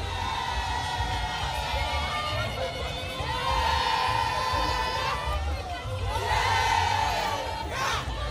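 Large crowd of marching protesters chanting and cheering, with long held cries rising above the noise twice.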